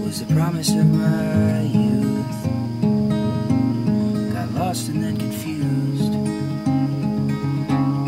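Steel-string acoustic guitar playing a slow folk song, chords picked and strummed steadily.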